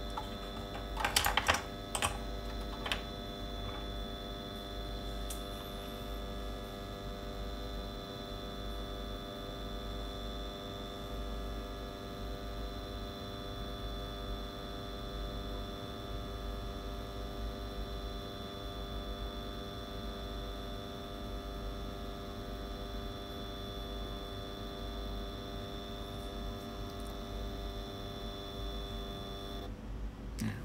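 Steady electrical hum with a faint high whine from the powered stepper-motor test bench, unchanging throughout. A few sharp clicks and knocks about one to three seconds in as the plastic controller is set down in its stand.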